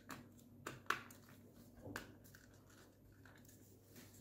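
Faint handling noise of small plastic parts: a few light clicks, the sharpest about a second in, as a solar panel is pressed and fitted onto a curtain motor unit.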